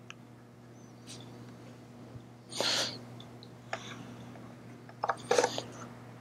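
Room tone with a steady low electrical hum. About two and a half seconds in there is one short, loud breath into a clip-on lapel microphone, followed near the end by a few softer breath and mouth sounds and faint clicks.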